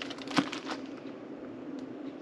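A few small clicks and crinkles of plastic ruler pieces and packaging being handled, the sharpest click about half a second in, over a low steady hum.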